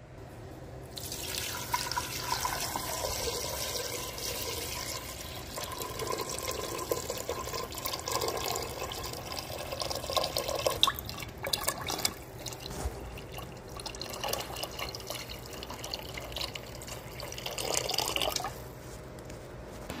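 Water pouring into a stainless-steel pot of raw meat pieces, filling it. It starts about a second in and stops shortly before the end.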